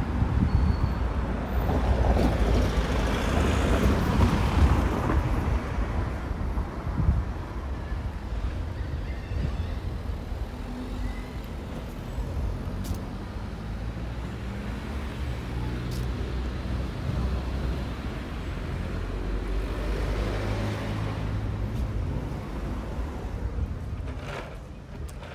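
Street traffic: cars driving past on a road, the loudest pass in the first few seconds, with another car swelling past about twenty seconds in over a low steady rumble.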